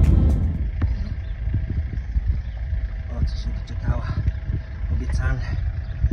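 Background music cuts off about half a second in, leaving a steady, uneven low rumble like wind buffeting the microphone, with faint voices in the background.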